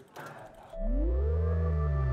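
Synthesized intro sting for a segment title card. About three-quarters of a second in, deep tones come in and bend up and back down, under a few held higher tones.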